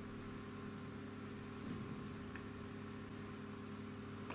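Quiet room tone: a steady low hum with faint background hiss, unchanging throughout.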